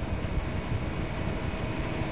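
Steady hiss and faint hum of an open telephone line, with no voice on it.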